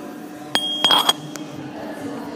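A few sharp knocks and clinks close to the microphone, with a short high ring: a sharp knock about half a second in, then a cluster of clinks about a second in, where the ring cuts off.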